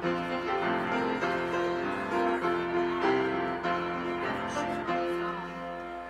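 Piano playing a slow hymn introduction in held chords, with the notes changing every second or so, ahead of the choir's entry.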